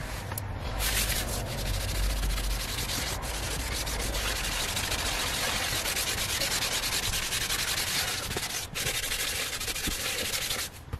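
A wet wipe rubbed back and forth over a leather car seat in quick strokes, starting about a second in, with a brief pause near the end.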